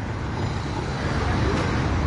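Road traffic noise: a steady rush of passing vehicles on the street.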